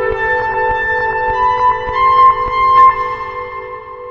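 Synthesizer playing held chords with a higher melody line moving on top, over faint regular ticking. The chord fades and drops out near the end, and a new chord is struck just after.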